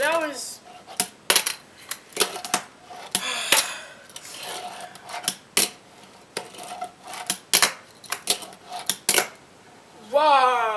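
Fingerboard tricks on a wooden tabletop: a small finger skateboard clacking against the wood as it is popped, flipped and landed, many irregular sharp clacks, some with a short ring.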